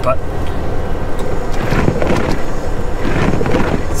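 Steady low rumble inside a semi truck's cab: the diesel engine running and the tyres on wet pavement as the truck rolls slowly along.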